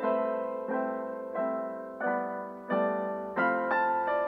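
Background piano music: slow, single notes and chords struck about every two-thirds of a second, each left to fade.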